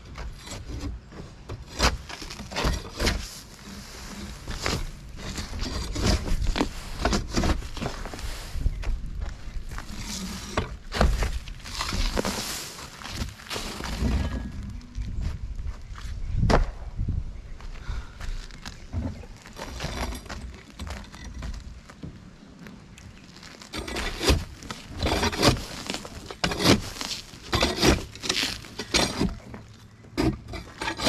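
A steel pitchfork scraping and prying through loose roof gravel and old flat-roofing layers during a tear-off, with boots crunching on the gravel. Irregular sharp scrapes and knocks, thickest in the last several seconds.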